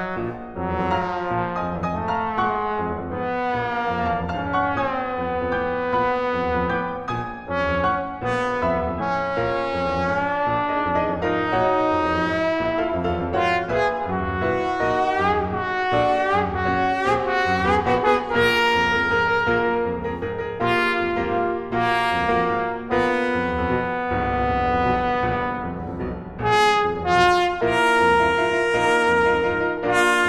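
A trombone playing a melody over piano accompaniment, with some notes bending in pitch around the middle.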